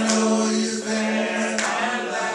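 Unaccompanied male singing, drawn out on one long held note.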